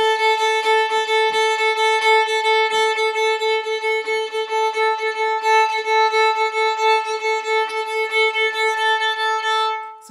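Violin playing a single held note with rapid, even back-and-forth bow strokes, about three a second. The bow changes are connected with no full stop between them, so the tone never breaks.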